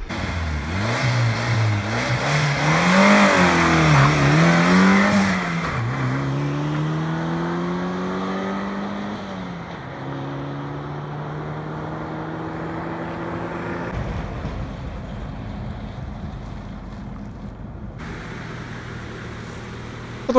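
Turbocharged Lada Niva engine, running on LPG at about 0.4 bar of boost, accelerating hard: the revs climb and fall back several times as it shifts up through the gears, then it holds a steadier, lower note in the second half.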